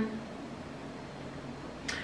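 Quiet steady room tone in a pause between words, with a short faint sound just before speech resumes near the end.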